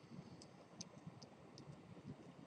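Near silence with about six faint, irregularly spaced ticks of a pen tip against a writing surface as words are written out.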